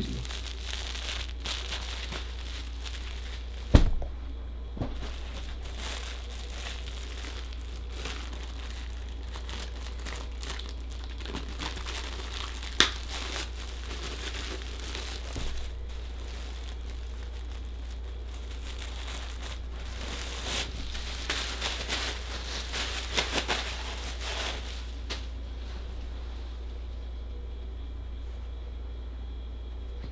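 Clear plastic poly bag with a zip-up hoodie inside being handled and opened, in irregular rustles and small clicks, with one thump about four seconds in and a busier stretch of handling later on.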